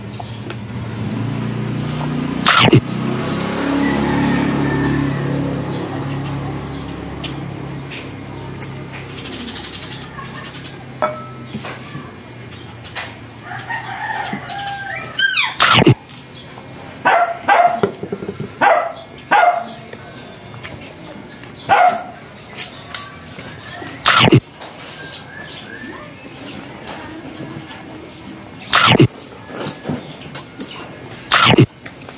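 Eating sounds of roast pork leg eaten by hand: sharp lip smacks and chewing clicks, spaced every second or two.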